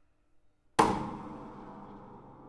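A single sharp blow on an old upright piano's body about a second in, with the strings ringing on afterwards and slowly dying away.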